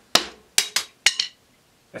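A wooden drumstick strikes a rubber practice pad on a snare drum and rebounds out of the hand, the sign of a stick held at its bounce point. Three more sharp wooden clacks follow within the next second as the loose stick clatters, the last with a brief ring.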